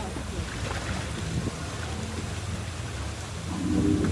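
Water in an artificial geyser pool churning and settling after a burst, a steady rushing noise with a low rumble. Near the end a louder, deeper sound sets in.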